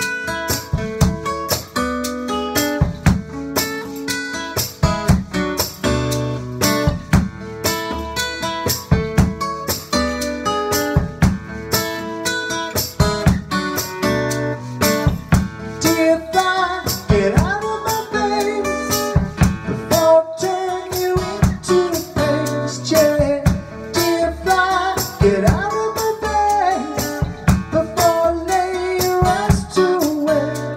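Acoustic guitar playing a song's opening with percussion striking along in a steady rhythm. From about halfway in, a wordless sung melody with gliding pitch joins in.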